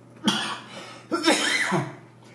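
A man's voice: a short cough a quarter second in, then a longer vocal sound about a second in whose pitch rises and falls.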